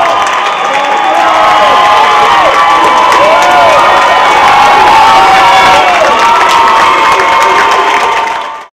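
Theatre audience cheering and screaming, many high voices overlapping, with some clapping.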